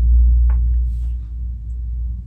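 A deep, low rumble that is loudest at the start and fades away over about a second and a half, with a faint short click about half a second in.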